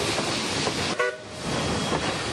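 A short train horn toot about a second in, over a steady rumble of train noise.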